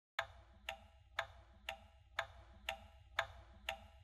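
Clock ticking: eight faint, sharp ticks, evenly spaced at two a second.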